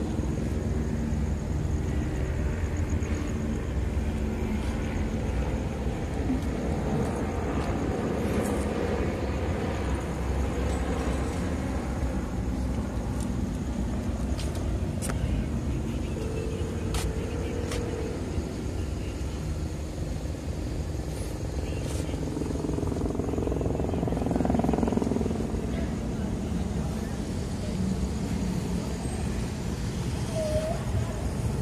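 Steady low rumble of road traffic on a city street, with car engines running and a vehicle passing louder about 25 seconds in.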